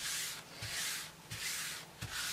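A hand rubbing across a grid paper work surface in three strokes.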